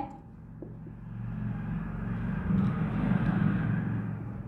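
A passing vehicle's rumble: a low noise that swells over the first couple of seconds, peaks about three seconds in, then begins to fade.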